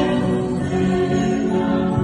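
A choir singing a sacred hymn in long held notes.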